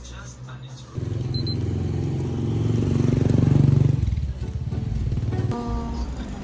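A motorcycle engine running close by, starting suddenly about a second in, growing louder and then falling away about four seconds in, over background music.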